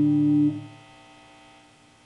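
Electric guitar's sustained chord ringing, then damped about half a second in, its last overtones dying away over the next second. A faint amplifier hum remains.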